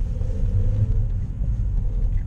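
Car engine and road rumble heard from inside the cabin as the car pulls away from a green light, a heavy low rumble with a faint steady hum above it.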